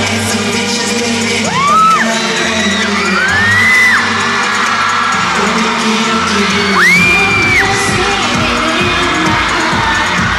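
Live K-pop song played loud over an arena's sound system, with singing over a heavy beat, heard from far up in the stands. Nearby fans let out high-pitched screams three times, each rising and holding before breaking off.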